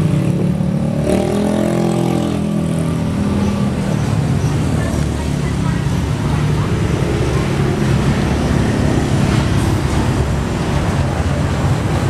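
Honda Astrea Star's small four-stroke single-cylinder engine running steadily at idle. Its pitch briefly rises and falls about one to three seconds in.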